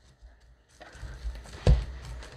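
Tabletop handling noise: after a near-silent moment, a low rumble of things being moved starts about a second in, with one dull thump near the end.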